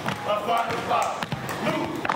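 Step-routine stomps and cane taps on a hardwood gym floor: a quick run of sharp impacts, about three or four a second, with voices calling out over them.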